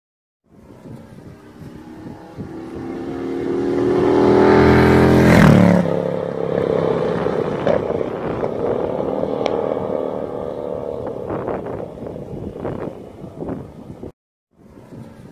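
Morgan 3 Wheeler driving past at speed: its engine grows louder as it approaches, passes about five and a half seconds in with a sudden drop in pitch, then carries on more quietly as it pulls away up the lane.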